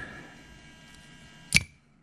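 Power solenoid firing: a single sharp metallic clack with a short ring, about one and a half seconds in.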